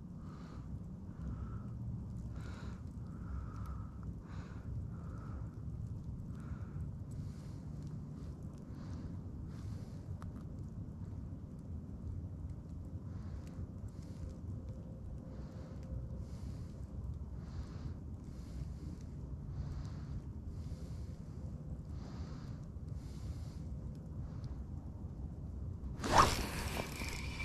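Low, steady wind rumble on the microphone, with faint scattered soft sounds over it.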